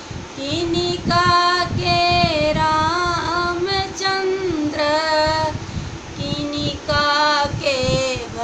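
An older woman singing a Hindi folk song for Ram's birth, solo and unaccompanied, in long held notes with a slight waver, phrase after phrase with short breaks between.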